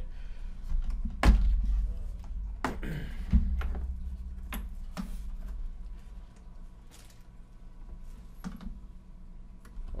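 Hard-plastic tool carry case being unlatched and opened on a wooden table: a sharp plastic knock about a second in, a second knock a couple of seconds later, then lighter clicks and handling of the contents.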